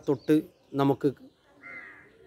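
A man's voice saying a few short words, then a bird calling once in the background about one and a half seconds in.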